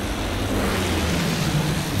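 Sound effect of a propeller aircraft's engine droning steadily under rushing wind, the rush swelling through the middle.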